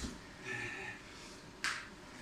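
A single sharp slap of a hand on a tiled floor about one and a half seconds in, from someone crawling on all fours.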